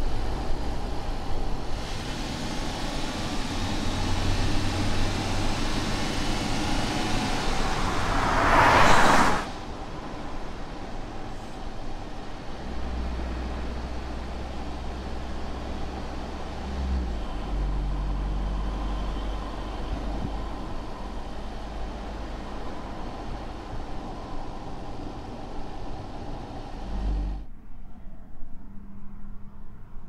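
Audi S5 sedan driving on a road, engine and tyre noise building to a loud pass-by about nine seconds in that cuts off sharply. A steadier low engine drone follows, changing pitch partway through, then drops away near the end.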